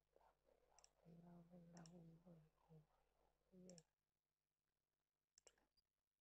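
Near silence: a faint low voice murmuring during the first four seconds, with faint sharp clicks every second or two.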